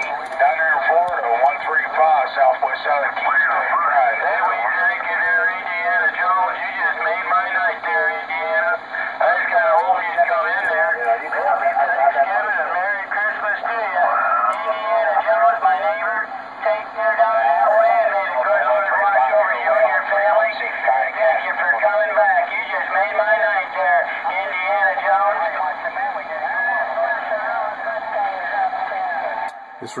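Other stations' voices received on an RG-99 CB radio and heard through its speaker as narrow, tinny speech, continuous and unbroken. The AGC circuit has just been fixed by raising R42 to 1.2 megohm, so the audio comes through without the motorboating, the chopping of the signal, that was the fault.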